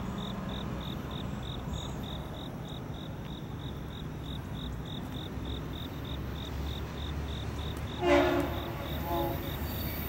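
A distant Norfolk Southern freight locomotive's horn sounds one blast about eight seconds in and a shorter, fainter one about a second later, over a low steady rumble of the approaching train. An insect chirps steadily, about three chirps a second.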